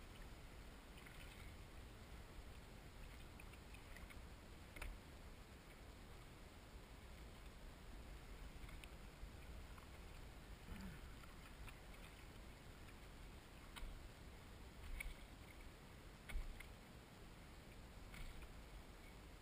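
Quiet lapping of small waves against the hull of a small paddle craft, with a few soft splashes or knocks scattered through.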